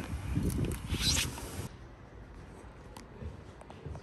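Sliding glass balcony door being handled and slid along its track, with a short rushing slide about a second in. After that only faint knocks against a quieter room.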